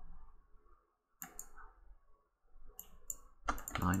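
Quiet computer mouse clicks: a short cluster about a second in and another near three seconds, over a faint low room hum.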